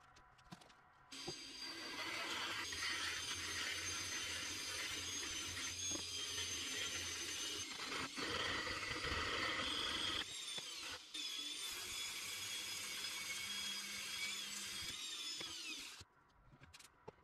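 Washing machine motor spinning its bare shaft with a whine while a sandpaper-wrapped stick is pressed against the shaft, a rough scraping over the whine. It starts about a second in, dips briefly about ten seconds in, and winds down with a falling pitch at the very end.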